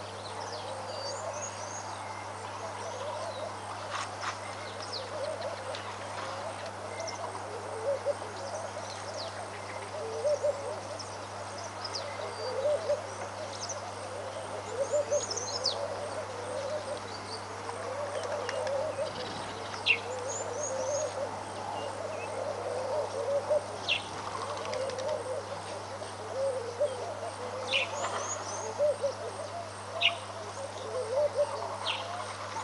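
Wild birds calling: a continuous chorus of short, low, repeated calls, with scattered higher chirps and whistles, over a steady low hum.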